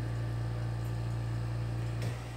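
Portable air conditioner running: a steady low hum under an even hiss of fan noise.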